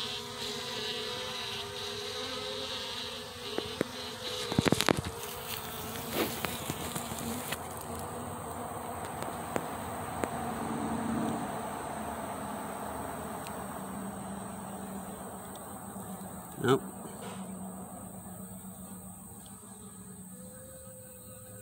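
Honeybee colony buzzing at the hive, a steady droning hum that fades somewhat after about eight seconds. A few sharp knocks sound about four to five seconds in.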